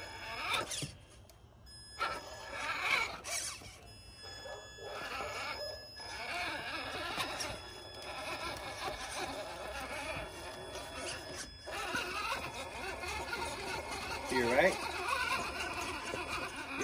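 RC crawler's electric motor and gearbox whining high as it crawls slowly over logs and up a wooden ramp. The drive stops and starts several times, with a few sharp knocks of tires and chassis on the wood.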